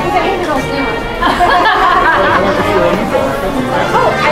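Shoppers' voices chattering in a busy shop, with background music playing.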